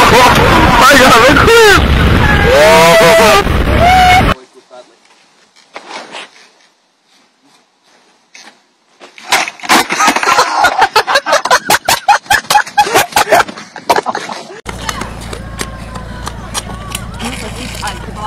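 Loud rushing water and wind with people yelling as a small passenger boat is hit by a breaking wave. This cuts off abruptly into a few seconds of near quiet. Then comes a fast, loud run of sharp clicks and rattles from a skateboard on pavement, with voices, followed by a steadier outdoor background with faint voices.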